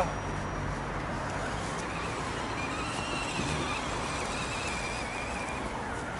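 Radio-controlled scale crawler's small electric motor and gears whining faintly as it creeps through grass. The wavering whine comes in about two seconds in and fades near the end, over a steady low background hum.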